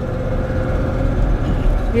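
Car cabin noise while driving: a steady low rumble of road and engine, with a faint steady tone that fades out about halfway through.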